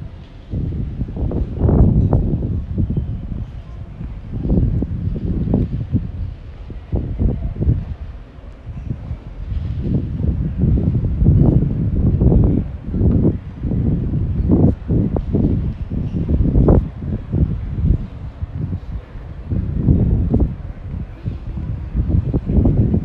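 Wind buffeting a handheld camera's microphone outdoors, loud irregular low rumbling gusts that swell and drop every second or so.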